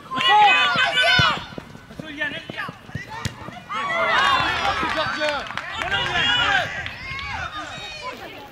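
High-pitched shouts and calls from young footballers on the pitch, several voices overlapping through the middle and second half, with a few short knocks among them.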